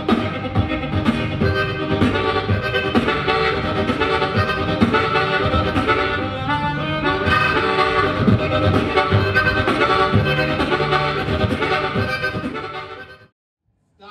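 Intro music led by harmonica over a rhythmic beat, fading out about a second before the end.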